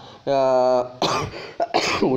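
A man's voice holds a drawn-out filler vowel, then coughs twice, about a second in and again near the end.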